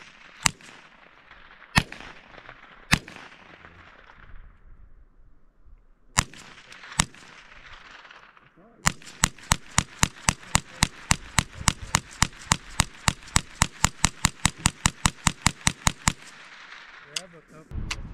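Rifle shots: five single shots a second or so apart, then a rapid string of about thirty-five shots at roughly five a second lasting about seven seconds, each trailing off briefly.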